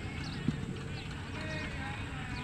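Cricket bat striking the ball once, a single sharp crack about half a second in, over distant voices and open-ground background noise.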